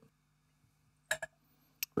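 Glass bottle and tasting glasses being handled on a table: a couple of short clinks about a second in and a sharp click near the end.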